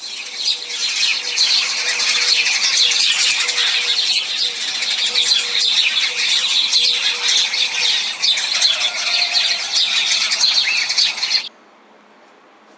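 Recorded birdsong: dense, continuous chirping and twittering from many birds. It cuts off suddenly near the end.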